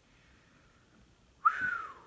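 Near silence, then about one and a half seconds in a short single whistled note through pursed lips, jumping up at the start and sliding slowly down.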